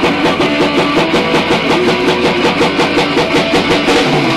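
Amateur rock band playing live in a small room: a strummed electric guitar over a drum kit keeping a fast, even beat.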